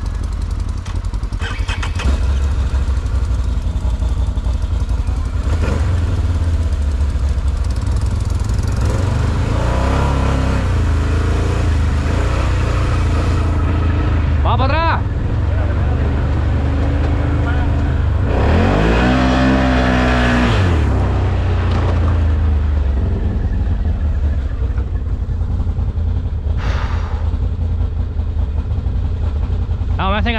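Can-Am ATV engine running, a steady low rumble, with other engines of the riding group nearby.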